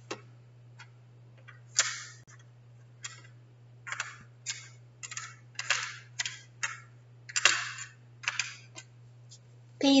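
Small letter tiles being picked out of a plastic tray and set in place: a dozen or so short clicks and rustles, irregularly spaced, over a steady low hum.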